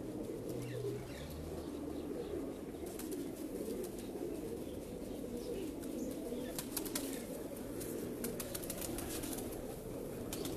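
Pigeons cooing in a continuous murmur, with a few sharp clicks of handling around the middle and near the end.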